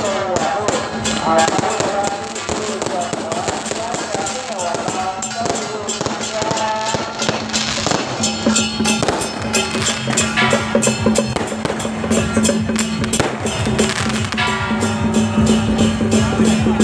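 Temple procession music with a steady held drone note and a wavering melody, over dense crackling from strings of firecrackers set off along the route.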